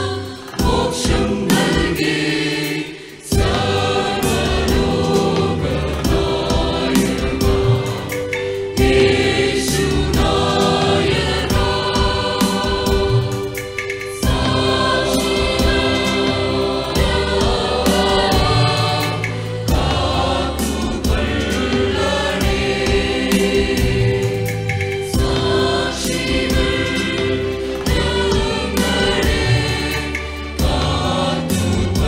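Mixed church choir of women's and men's voices singing a hymn together in sustained phrases, with a brief break between phrases about three seconds in.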